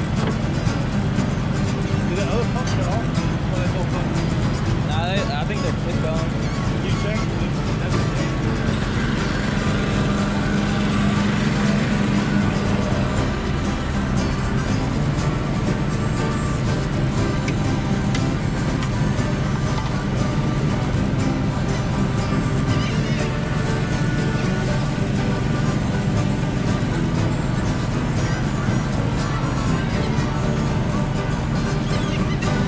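Shrimp boat's engine running steadily, with seawater churning in the culling box. A few gliding gull calls come about five seconds in.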